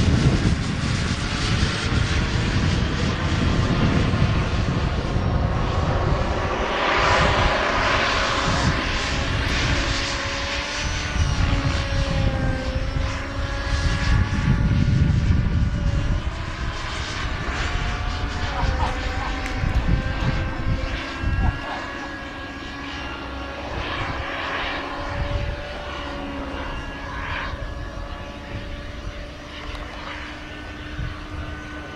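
Small model jet turbine engine of a radio-controlled jet whining steadily in flight, its pitch shifting slightly as it passes. It grows fainter in the last third as the jet moves away.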